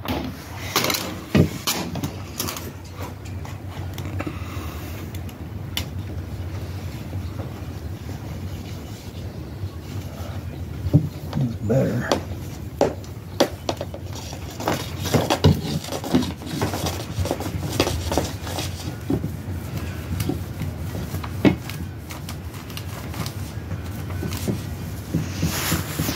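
Scattered rustling, crinkling and rubbing of vinyl pinstripe tape as it is peeled, pressed and smoothed onto a truck fender with a paper towel, with short knocks and a steady low hum underneath.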